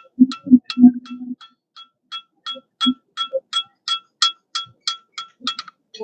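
Farrier's hand hammer striking a steel horseshoe on the anvil, about three blows a second, each with a bright metallic ring. The heaviest, duller blows come in the first second or so, and the hammering stops just before the end.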